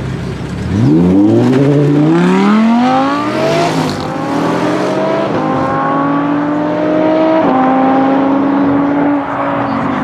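Audi R8 V10 Plus (5.2-litre V10) and Audi RS6 Avant (twin-turbo V8) idling at the line, then launching side by side from a standing start about a second in. The engines climb steeply in revs, then drop in pitch at each of several upshifts as they accelerate away.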